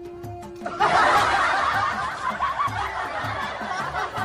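Laughter bursts in suddenly about a second in and carries on, over background music with a steady low beat. Before it, a single held note of the music sounds.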